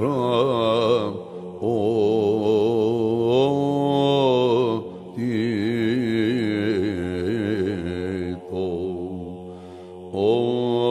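Byzantine chant in the plagal fourth mode: a melismatic vocal line with a wavering, ornamented melody sung over a steady held drone (ison). The melody pauses briefly about a second in and again near five seconds, and it fades lower in the last second or two.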